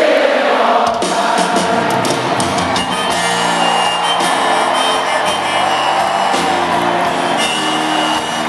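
Live band music with grand piano, a crowd singing along and cheering in the first second, then the band's sustained notes.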